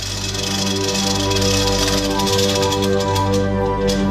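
Background music: a sustained chord of held notes that swells slightly, with a few short high ticks in the second half.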